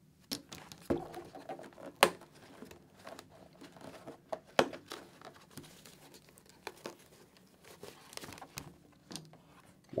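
Hands pulling the fabric-covered foam cheek pads and liner out of a full-face motorcycle helmet: fabric rustling and crinkling with scattered sharp clicks and knocks, the loudest about two seconds in.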